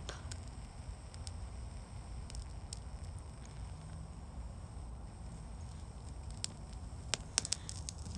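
A faint low rumble, then in the last second and a half a quick run of sharp clicks from a handheld lighter being struck to light pine sap.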